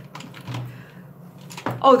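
A few light clicks and clacks of small hard objects, makeup items, being moved and handled while rummaging, with a soft knock about half a second in.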